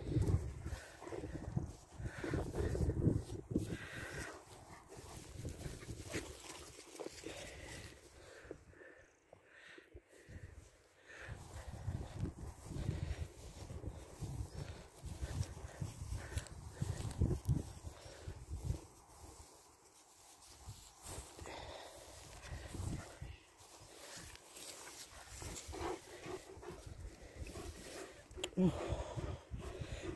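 Sounds of a German Shepherd close to the microphone, over an uneven low rumble of wind and handling noise that drops quieter about ten and twenty seconds in.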